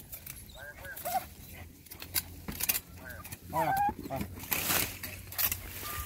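A metal digging tool strikes and scrapes into stony soil and dry pine needles at a burrow mouth, giving a series of irregular sharp knocks and rustles.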